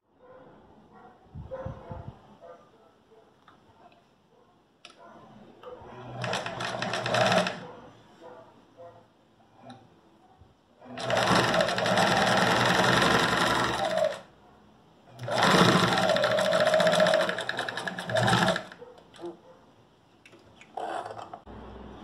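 Domestic sewing machine sewing a straight seam in three runs: a short one about six seconds in, then two longer runs of about three seconds each, stopping between them while the fabric is repositioned.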